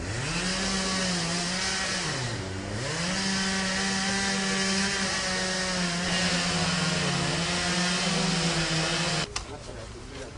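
Chainsaw revving up and running at high speed, throttled down briefly about two and a half seconds in and revved back up, then cut off abruptly near the end.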